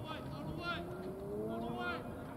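Indistinct voices carrying across an outdoor ballfield over steady low background noise, with one long upward-gliding call in the second half.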